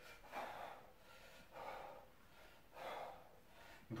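A man's faint, forceful exhalations, three of them about a second apart, in time with the effort of twisting a dumbbell side to side in a Russian twist.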